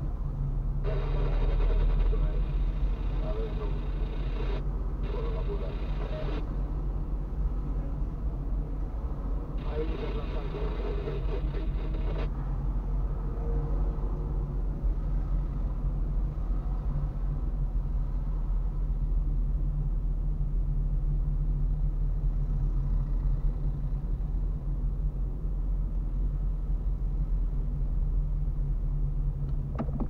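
Steady low rumble of a car's engine and tyres heard from inside the cabin while driving slowly along a city street.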